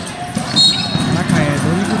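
A referee's whistle blows one short, shrill blast about half a second in, calling a foul, over arena crowd noise and a basketball being dribbled on the hardwood court.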